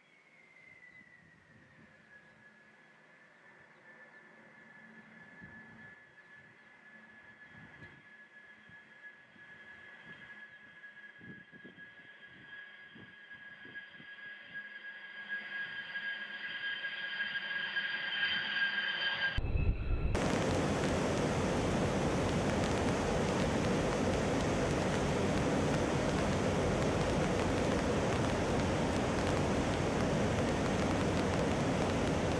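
B-2 Spirit bomber's four General Electric F118 turbofan engines whining with a high steady pitch. The tone slides down in the first couple of seconds, then grows steadily louder as the aircraft comes closer. About two-thirds of the way in, the sound cuts abruptly to a loud, steady rushing roar.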